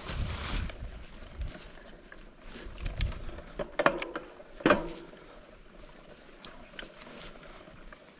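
Mountain bike riding over a rough dirt trail: leafy brush swishes against the camera for a moment at the start, then the tyres roll over dirt with the bike's frame and chain rattling over bumps, a few sharp knocks about halfway through.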